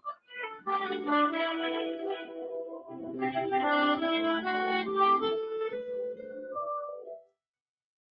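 Violin music played over a video-conference call, with held and sliding notes. It sounds only fair through the call's audio, which picks up voice better than music, and it cuts off suddenly about seven seconds in.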